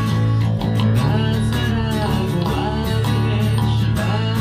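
Live acoustic band playing: a strummed steel-string acoustic guitar with an electric bass line underneath and a man singing the melody.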